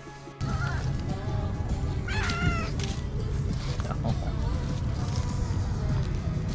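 A domestic cat meows once, a rising-then-falling call about two seconds in, over a steady low rumble from outdoors.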